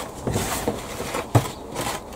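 Handfuls of peat-free wool compost being scooped and dropped into an orange plastic pot: two spells of rustling, with a single sharp tap between them.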